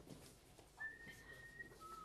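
A person whistling faintly: one long steady note, then a lower, shorter note near the end.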